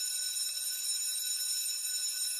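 Electric school bell ringing, a steady, shrill ring with no breaks.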